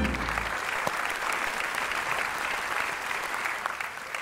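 Audience applauding, a dense steady clapping that eases off slightly near the end.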